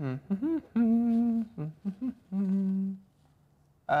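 A person humming a short wordless tune: a few sliding notes and then two long held notes, the second lower than the first.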